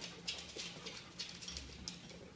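A dog's claws clicking on a hard floor as it moves about: faint, irregular ticks.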